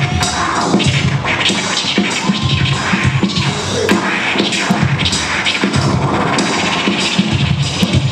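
A DJ scratching a record over a hip-hop beat: short back-and-forth pitch glides and cuts over a steady drum pattern, played live through a sound system.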